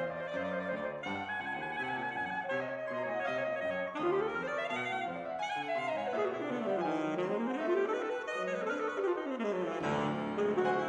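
Alto saxophone and piano playing a fast, busy passage together. About four seconds in, the music breaks into sweeping runs that climb and fall in pitch several times.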